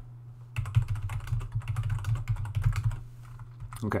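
Typing on a computer keyboard: a quick run of keystrokes that starts about half a second in and stops about a second before the end.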